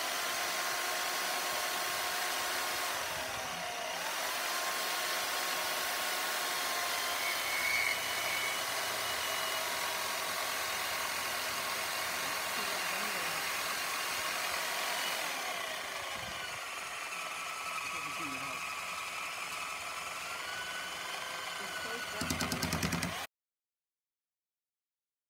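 Harbor Freight portable bandsaw running and cutting into a 6061 aluminum round billet, its motor pitch sagging under load twice, around 3 s and 15 s in. The sound cuts off suddenly about a second before the end.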